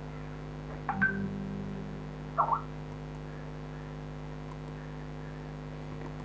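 Steady low electrical hum, like mains hum in the recording, with two brief faint sounds about one second and two and a half seconds in.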